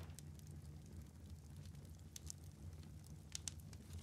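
Near silence: a fire crackling faintly, a few scattered pops over a low steady hum.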